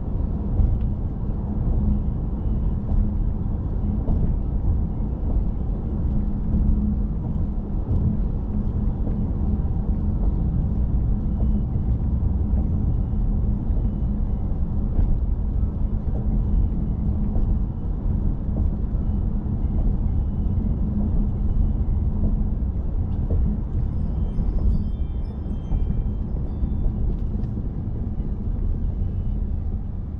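A car driving along a road: a steady low rumble of tyre and engine noise.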